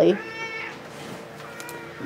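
A domestic cat gives one short, high meow lasting about half a second, falling slightly in pitch, just after the start.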